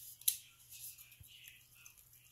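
Silverware being handled in a foil-lined pan of baking-soda solution: a single light click, then faint, soft swishing of the liquid as the hand moves among the forks.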